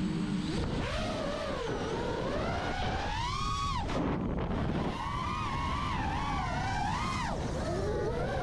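iFlight Nazgul 5 FPV quadcopter's brushless motors and propellers whining in flight, the pitch rising and falling with the throttle. The whine climbs steeply about three seconds in and drops off suddenly near four seconds, then again near seven seconds.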